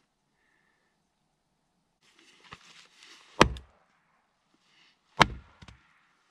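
A small hand axe chopping into a board on a wooden chopping block: two sharp chops about two seconds apart, the first about three seconds in, with some shuffling and rustling before it.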